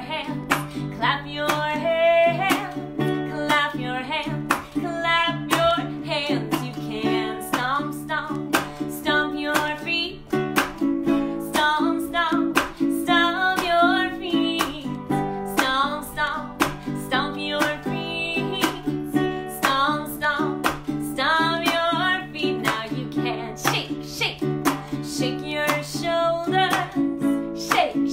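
A woman singing a children's song to a steadily strummed acoustic string instrument.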